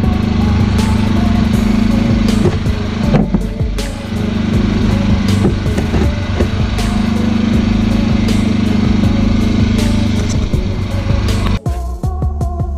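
Small inverter generator engine running steadily, its hum dipping briefly about three seconds in, while it powers a battery charger.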